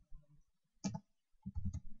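Computer keyboard keys being pressed: one sharp click about a second in, then a quick run of several keystrokes near the end as a number is typed in.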